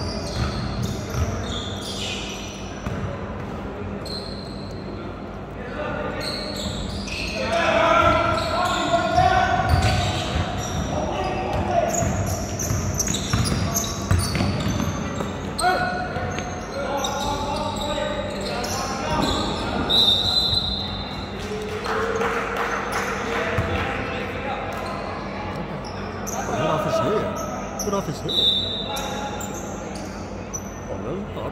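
Basketball game in a large gymnasium: a ball bouncing on the hardwood court amid players' and spectators' voices, all echoing in the hall. Two short high tones cut through, one about two-thirds of the way in and one near the end.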